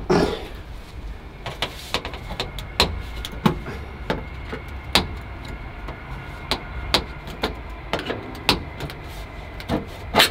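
Thin 0.9 mm sheet-steel repair wheel-arch panel being forced by hand into a car's rear wheel arch. The metal gives irregular sharp clicks and knocks as it flexes and catches against the arch edge.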